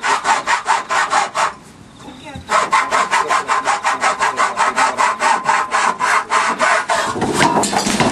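Hacksaw cutting through a horse float's chest rail in quick, even strokes, about five a second, with a short pause about two seconds in. The sawing stops about seven seconds in.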